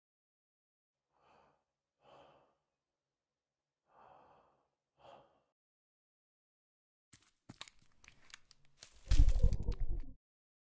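Four soft, tense breaths, then scattered clicks and rustling, and near the end a loud burst of automatic rifle fire lasting about a second.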